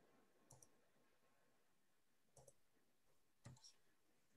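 Near silence broken by three faint computer mouse clicks, each a quick press-and-release pair: one about half a second in, one past the middle and one near the end.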